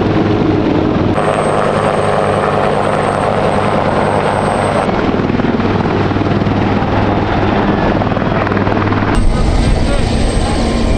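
Marine Corps UH-1Y Venom helicopters running close by, with turbine whine and steady rotor noise. The sound changes abruptly about a second in, around five seconds and again near the end as the shots change.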